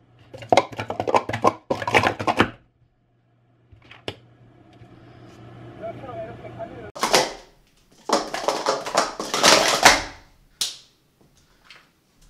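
Plastic sport-stacking cups clattering as they are stacked up and down at speed on a stacking mat, in two rapid runs of clacking about two to three seconds each, the second starting about seven seconds in.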